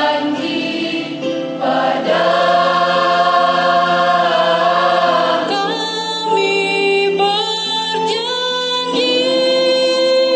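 Mixed choir of women's and men's voices singing in harmony, holding long chords that change every two or three seconds.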